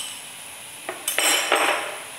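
A cooking utensil clicks once against the frying pan. About a second later comes a short, loud scrape of utensil on pan lasting under a second.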